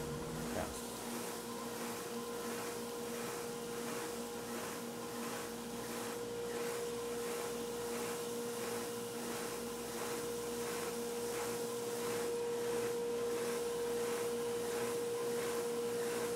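Stationary woodshop sander running with a steady hum and a faint regular pulse, a small piece of wood held against it.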